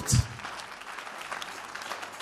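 Congregation applauding quietly, many hands clapping at once.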